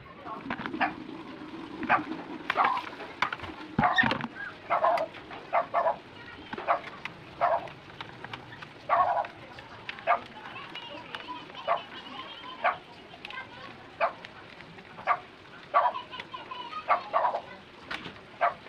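A dog barking repeatedly, a string of short barks about once a second.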